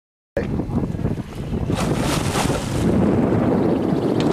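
Wind blowing across the microphone on an open boat at sea, with water noise beneath it. It cuts in suddenly after dead silence and briefly gets louder and brighter about two seconds in.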